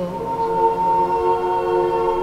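Church choir singing slow, sustained chords of an Orthodox liturgical response, several voices holding each note. The chord changes at the very start.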